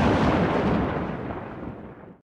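The long tail of a loud explosion-like boom sound effect for a title card, dying away steadily and fading out near the end.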